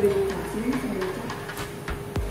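Soft background music with held notes, under a low wavering hum in the first second. There are a few sharp clicks of cutlery on a plate near the end.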